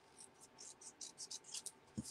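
Small scissors snipping along a narrow strip of white cardstock: a quick run of about ten faint, short snips, several a second.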